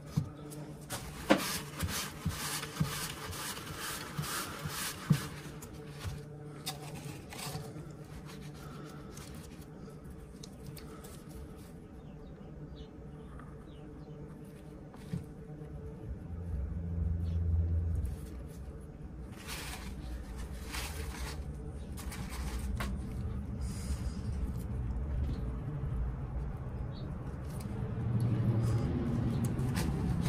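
Small clicks, taps and rubbing as a pocket knife and its new zebrawood handle scales are handled and fitted together, with the sharpest clicks in the first few seconds. A low rumble comes in about halfway and grows louder toward the end.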